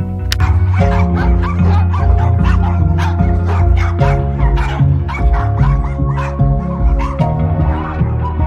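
Several caged small terriers barking repeatedly, starting about a third of a second in, over background music with sustained tones.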